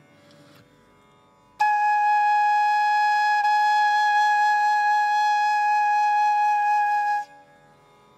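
Carnatic bamboo flute playing one long, steady held note, the first note taught to beginners. The note starts cleanly about a second and a half in, holds for about five and a half seconds and stops near the end.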